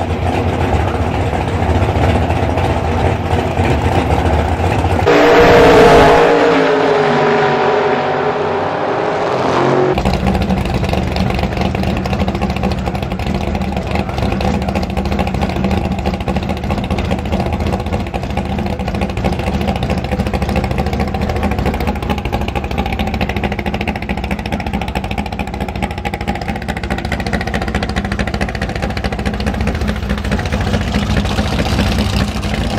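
Drag-race hot rod engines idling. About five to ten seconds in, one engine comes up loud and its pitch falls away. From ten seconds on, a steady idle runs.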